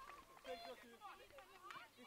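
Near silence with faint, distant voices calling out on and around the pitch.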